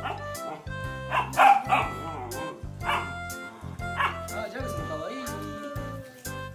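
Bernese mountain dog puppy giving several short barks and yips, the loudest about a second and a half in, over background music.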